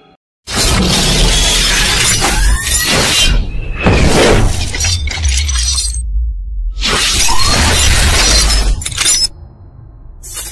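Cinematic channel-intro sound effects: loud crashing, shattering hits over a deep bass rumble, with sweeping pitch glides. They come in two long bursts with a short break a little past the middle, then drop to a low tail near the end.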